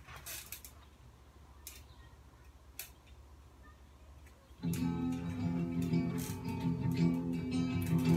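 A quiet room with a few faint clicks and knocks for the first few seconds, then guitar music starts suddenly a little past halfway and plays on steadily.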